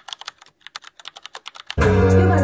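Computer keyboard typing sound effect: a quick run of key clicks, about eight a second, with music cutting back in near the end.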